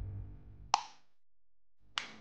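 Background music fading out, then two sharp clicks a little over a second apart, the first the louder. The second comes as a floor lamp's knob switch is turned.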